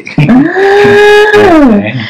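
A person's long, drawn-out vocal cry, held on one high pitch for about a second and then sliding down in pitch near the end.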